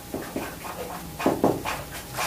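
Dry-erase marker writing on a whiteboard: a couple of short strokes near the start, then a quick cluster of louder strokes a little past halfway.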